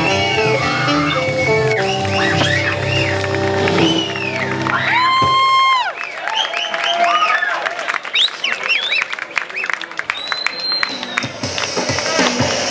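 A live jazz band with upright bass and saxophone ends a tune on a held high note about halfway through. The outdoor crowd then applauds, cheers and whistles.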